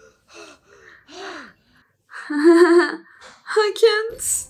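A woman's voice making wordless pained sounds: a few short gasps, then a louder drawn-out whimper that wavers in pitch about two seconds in, and more short breathy sounds near the end.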